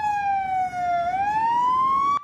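Emergency vehicle siren in a slow wail: one tone falling in pitch for about the first second, then rising again.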